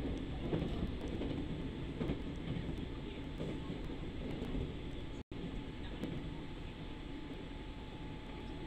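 Steady low rumble of a moving passenger vehicle, heard from inside the cabin. The sound cuts out completely for an instant about five seconds in.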